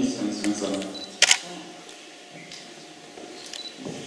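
A single camera shutter click, a quick double snap, about a second in, after the last words of a voice through the microphone.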